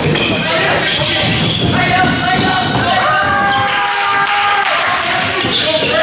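Basketball bouncing on a hardwood gym court during live play, under continuous overlapping calls and chatter from players and spectators.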